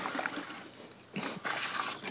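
Worm castings soaking in a bucket of water being stirred by hand with a utensil, the water sloshing faintly; it dips quieter about a second in.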